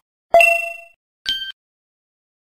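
A bell-like chime sound effect: one struck ding that rings and fades over about half a second, followed by a second, higher-pitched ding that cuts off short.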